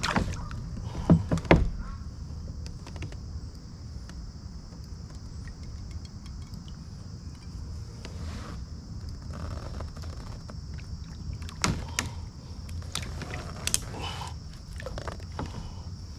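Knocks, clicks and rattles of gear being handled on a plastic fishing kayak, with a few sharp hits about a second in and more later on, over a steady low rumble.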